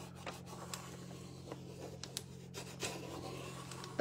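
A décor rub-on transfer being rubbed down onto slats: faint, scratchy rubbing with scattered small ticks.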